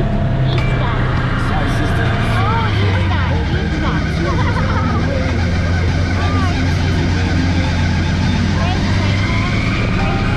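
Side-by-side UTV engine running steadily, heard from on board while driving a wet sandy trail.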